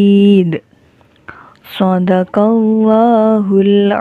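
A woman chanting Quranic verses in a slow, melodic recitation. A long held note stops about half a second in, and after a pause of about a second the chanting resumes with long held tones and a wavering, ornamented note.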